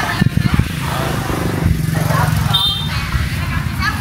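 Busy market background: people talking and a small engine running with a steady low hum for a second or two in the middle.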